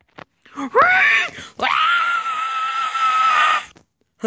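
A person's high-pitched scream: a short rising cry about a second in, then one long steady scream held for about two seconds that cuts off just before the end.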